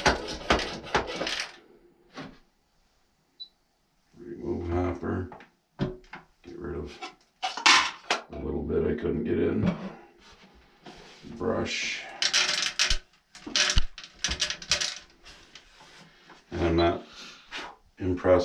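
Talking mixed with the rattle of shelled corn kernels being poured into the hopper of a grain moisture tester, and short clicks as the sample is handled.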